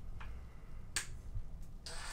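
Small plastic clicks from handling a cordless drill and working its switches: a soft click early on and a sharper one about a second in. A faint high hiss begins just before the end.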